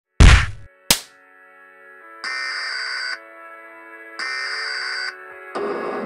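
Edited intro sound effects: a heavy hit, then a sharp click, then two buzzy electronic alert-style tones of about a second each, a second apart. A music bed comes in near the end.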